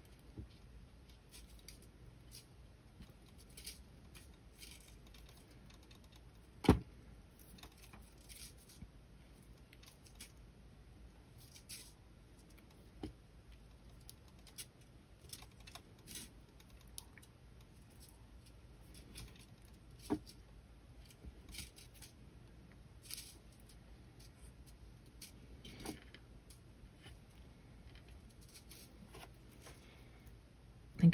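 Faint scratches and ticks of fine copper weaving wire being pulled through and wrapped around thicker copper frame wires by hand, with a sharper click about seven seconds in and another about twenty seconds in.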